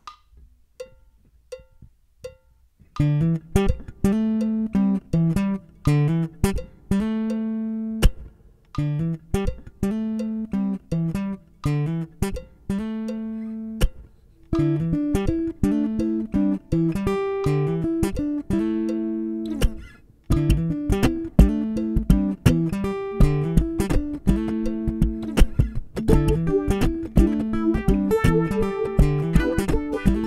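Enya NEXG 2 smart guitar played into its built-in loop station: a few soft ticks, then a picked melodic phrase that repeats as a loop. More guitar layers are overdubbed on top about halfway through and again about two-thirds of the way through, so the texture grows denser.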